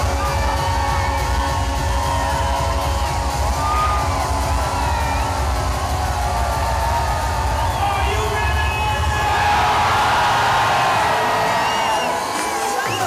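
Loud live concert music with a heavy bass beat and many voices singing over it; about nine seconds in the bass drops away and the crowd cheers.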